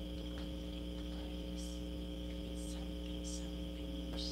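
Steady electrical mains hum with a thin high whine above it, unbroken throughout, and three brief high hisses in the second half.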